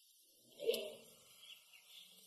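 Quiet outdoor garden ambience with a steady faint high hiss, broken by one brief, louder low sound about two-thirds of a second in and a few faint short high sounds after it.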